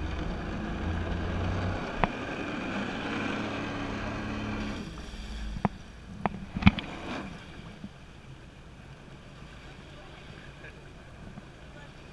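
Jet ski engine running at idle with a steady low hum, which fades away about halfway through. A few sharp knocks come around the middle, followed by a quieter wash of water and wind.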